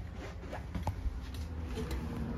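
Footsteps across a travel trailer's floor toward the door, with rustling handling noise and a few small taps over a low rumble.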